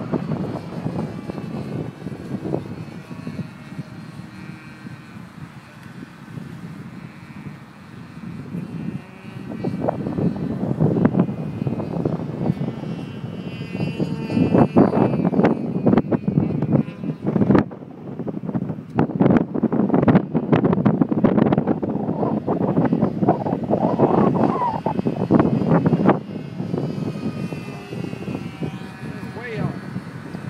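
A radio-controlled stick model airplane's engine drones steadily high overhead. Heavy wind buffets the microphone in gusts, loudest through the middle of the stretch.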